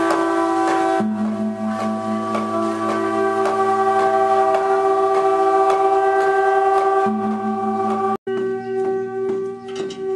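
Background music of sustained, drone-like tones with bell-like ringing overtones; the low notes shift about a second in and again near seven seconds, and the sound cuts out briefly just after eight seconds.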